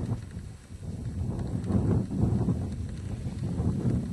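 Low, irregular rumbling noise of wind and handling on a camera's microphone, growing louder about a second in.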